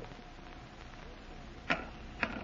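Faint steady hiss of an old radio recording, then a single sharp click near the end: a chess piece set down on the board.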